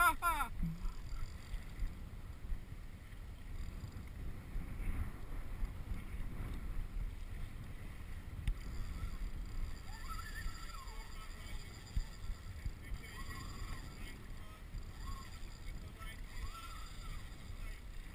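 Steady wind noise on the microphone and ocean water washing around a kayak at sea, with a few faint voice-like sounds in the second half.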